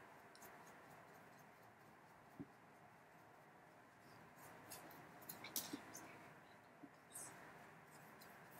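Near silence with faint, scratchy brushing and a few light clicks, more of them in the second half: a paintbrush working acrylic paint onto a plaster statue.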